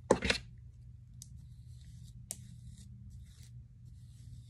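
A detangling brush pulled through damp, thick natural 4c hair, faint rustling in a few brief strokes in the second half. A short, loud burst of noise at the very start.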